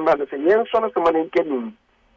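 Speech only: a man's voice talking over a narrow telephone line on a radio call-in, stopping shortly before the end.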